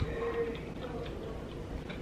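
A person chewing a mouthful of pasta, with small wet clicks of the mouth and a short, soft closed-mouth hum near the start.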